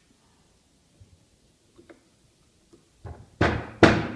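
Wood knocking on wood as the chestnut log and its wooden centre-finding discs are handled on a wooden workbench: a few faint taps, then a cluster of sharp knocks near the end, the last two loudest.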